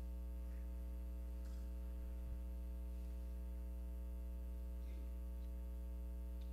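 Steady low electrical mains hum with a buzzy edge on the sound feed, unchanging throughout.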